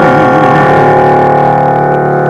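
Closing of a live song: a sung note held with vibrato, ending under a second in, over the accompaniment's sustained final chord.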